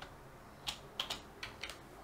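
A few faint computer keyboard keystrokes, about five quick taps in the second half.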